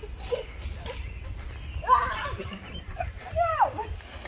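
Wordless cries and yells from people scuffling, with two loud cries that bend up and down in pitch about two seconds and three and a half seconds in, over a steady low rumble.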